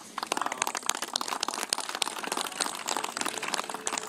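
Audience applauding: a steady patter of many scattered claps that stops just as speech resumes.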